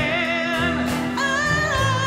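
Live band music: a woman sings a long held note with vibrato over electric bass, acoustic guitar and keyboard.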